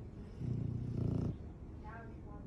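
English bulldog giving a low, raspy grunt that starts about half a second in and lasts just under a second.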